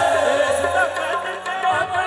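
Live qawwali music: voices singing a wavering melody over sustained harmonium chords, with a low rhythmic pulse beneath.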